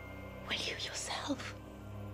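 Whispered film dialogue over a low, sustained music drone.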